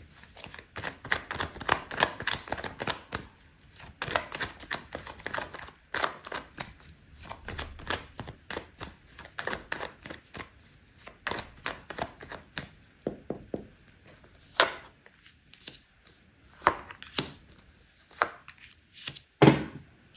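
Tarot cards being shuffled by hand: a quick, irregular run of card clicks and slaps, several a second, with a few sharper snaps in the last few seconds.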